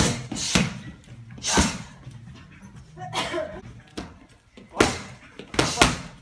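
Gloved strikes smacking focus mitts in Muay Thai padwork: about seven sharp slaps at an uneven pace, with a quick double strike near the end.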